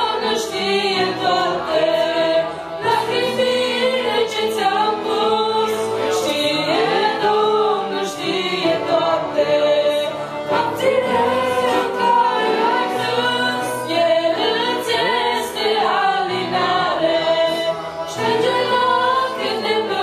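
Two girls' voices singing a Christian song together over a continuous accordion accompaniment.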